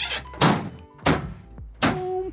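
Ambulance exterior compartment doors being slammed shut one after another: about four heavy thunks in two seconds.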